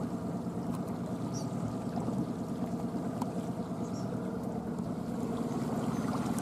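A 20 hp Honda four-stroke outboard motor running steadily and purring at idle, in gear and pushing the inflatable boat along slowly.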